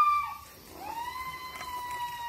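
An animal's long howling call in two drawn-out notes: the first, high and just past its peak, ends about half a second in, and the second starts just under a second in and holds a steady pitch for about two seconds.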